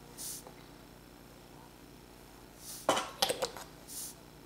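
A few quick clicks and taps, about three seconds in, as the plastic brush cap comes off a small glass bottle of model cement, set among short soft hisses over quiet room tone.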